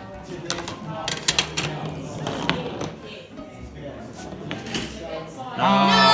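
Light clacks and knocks of a tabletop marble run of wooden blocks, dominoes and plastic parts, scattered irregularly as the pieces are set off, over faint murmuring voices. A voice rises loudly just before the end.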